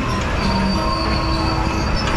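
Carousel music playing, with a few notes held long like a sustained organ chord, over a steady low rumble from the turning ride.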